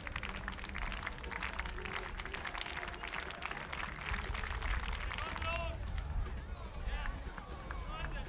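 Spectators clapping in a dense patter of claps, which thins out about five seconds in; voices call out after that.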